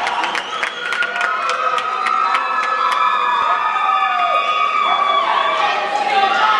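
Theatre audience cheering, screaming and whooping, with clapping that thins out after about three seconds while the shouting carries on.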